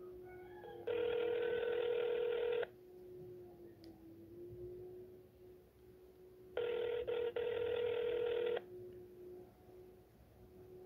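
Ringback tone of an outgoing call, playing through a Samsung Instinct SPH-M800's speakerphone. Two steady, slightly buzzy rings, each about two seconds long, come about four seconds apart; the second ring drops out briefly partway through.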